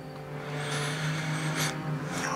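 Soft background music: a steady, sustained low drone held under the scene.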